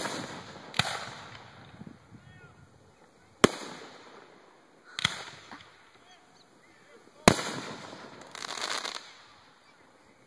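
Aerial firework shells bursting overhead: five sharp bangs, one right at the start and then at about one, three and a half, five and seven seconds in, each trailing off in a rumbling echo. Near the end comes a brief crackling hiss of crackle stars.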